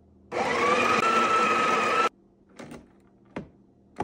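Built-in burr grinder of a Breville Barista Touch Impress espresso machine running for about two seconds. It starts suddenly, its motor whine rises as it spins up and holds steady, then it cuts off; a few light clicks follow.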